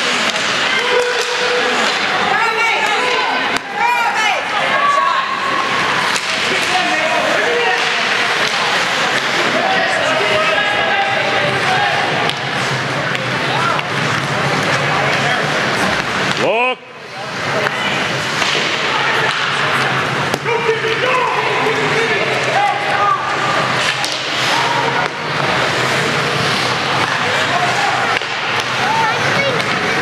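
Many voices at an ice hockey game talking and calling out over one another, with a few faint knocks from sticks, puck or boards. The sound cuts out briefly a little past halfway.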